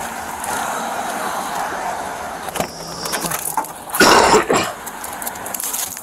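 Road traffic and wind noise on a body-worn camera's microphone, with a brief loud sound about four seconds in.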